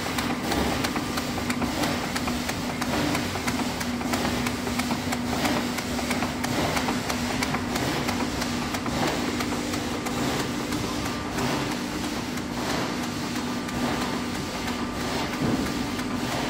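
Fastrack F350 label finishing machine running at high speed, cutting labels to register with a flexible blade: a steady mechanical hum with a rapid, irregular patter of clicks.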